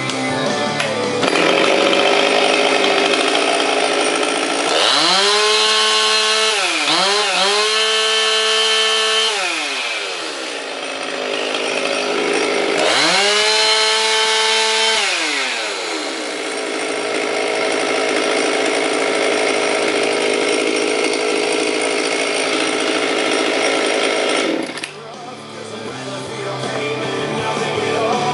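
Husqvarna 257 two-stroke chainsaw idling and being revved twice to full throttle, each rev a rising whine held for a few seconds and falling back to idle, the first with a brief dip. The saw is all original and running well. Near the end the saw sound drops away and music comes in.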